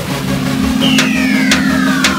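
Electronic sound design for an animated logo intro: a steady low drone with a long falling synth sweep that starts about a second in, and two sharp clicks half a second apart.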